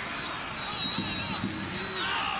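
Soccer match ambience of crowd and player voices, with one long, steady, high-pitched whistle that starts just after the beginning and lasts almost two seconds.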